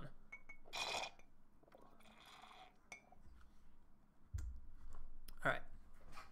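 A person taking two sips of a drink, with small clinks of the drinking vessel between them and a low thump about four seconds in.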